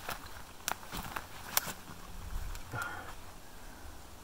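Footsteps and scuffing of a person scrambling down a steep rocky slope covered in moss and forest litter, with a few sharp clicks and knocks from rock, sticks or gear.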